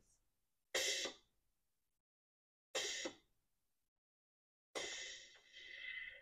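Ninja Thirsti sparkling water machine giving three short hissing spurts about two seconds apart, the third longer, as it dispenses the next six-ounce portion of water on its high fizz setting.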